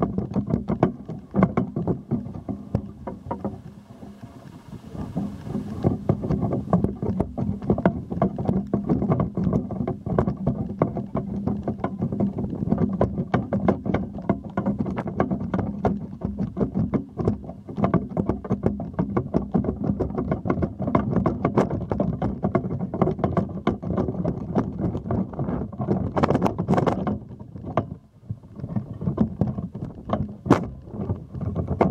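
Wind buffeting the microphone of a camera held up on a pole: a loud, dense rumble with constant crackling and knocks. It eases briefly about four seconds in and again near the end.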